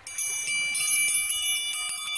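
Wind chimes ringing: a cluster of high metallic tones struck again and again in quick succession and ringing on, sounded as the call for the boats to report to the starting gate.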